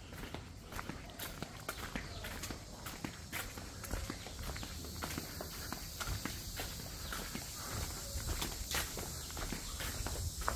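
Footsteps walking along a paved concrete path, a steady run of light steps.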